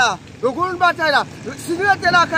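A man's voice speaking loudly and emphatically in short bursts.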